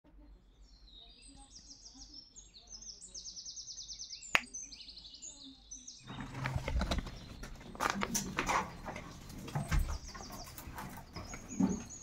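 Small birds chirping in fast, high trills, with one sharp click about four seconds in. From about six seconds, louder crinkling and rustling of a plastic bag gripped in a hand, with the birds still chirping.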